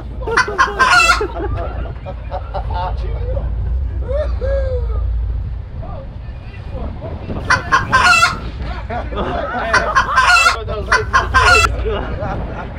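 Men whooping and hollering in high, crowing-like calls, in three loud bouts (just after the start, about seven and a half seconds in, and again near the end) with a softer sliding call in between, over a steady low rumble.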